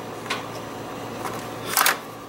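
Keycard in a hotel room's electronic card lock: a faint click soon after the start, then a short louder scrape near the end as the card is pulled and the lock accepts it.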